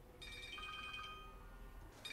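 Mobile phone ringtone, a short tune of high electronic notes that starts just after the beginning and stops near the end.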